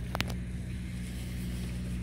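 Steady low hum of an idling engine, with a couple of brief sharp clicks just after the start.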